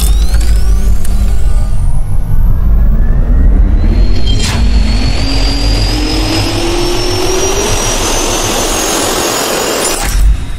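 Jet-engine turbine spool-up sound effect: a deep steady rumble with a whine that climbs slowly in pitch and a roar that builds, with one sharp click near the middle.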